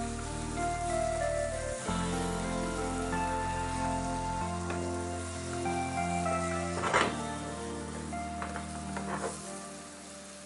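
Background music with held chords changing every few seconds, over the steady sizzle of a pomfret fish curry cooking in a pan. There is a sharp click about seven seconds in.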